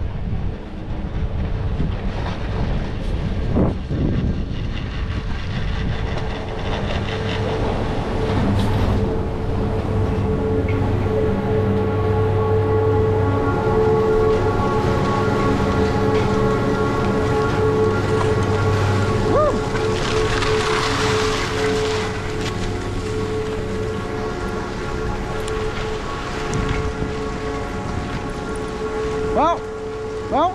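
Doppelmayr detachable chairlift terminal machinery, a steady multi-tone hum over a low rumble that sets in about eight seconds in as the chair rides into the terminal and holds until near the end. A brief hiss comes midway through.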